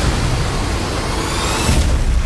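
Disaster-movie trailer sound mix: a loud, deep rumble and rushing noise of collapsing structure and water, layered with music. A rising whoosh builds over the second half and peaks just before the end.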